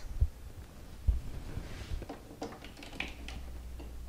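Faint handling noises of a laptop power cord being handled and plugged in: a few low bumps and several small clicks, with a low hum in the second half.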